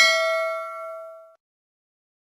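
Notification-bell ding sound effect from a subscribe-button animation: one bright bell chime that fades away about a second and a half in.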